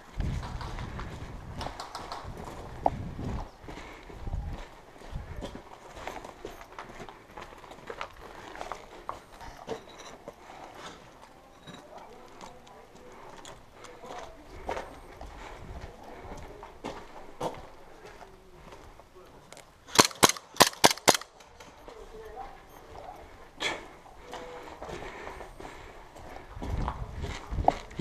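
Airsoft gun firing a quick string of about six sharp shots in a little over a second, about two-thirds of the way in. Soft scattered steps and gear rustle on a concrete floor before and after.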